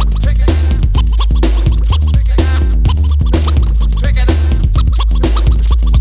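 Miami bass / electro funk track: a heavy bass line stepping between notes under a drum-machine beat, with turntable scratching over it.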